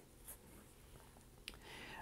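Near silence, with faint handling of a football boot in the hands and a small click about one and a half seconds in.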